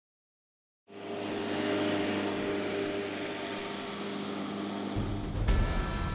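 Silence, then about a second in a steady drone with a low hum and hiss sets in, typical of a soundtrack's music intro; about five seconds in a low, uneven rumble joins.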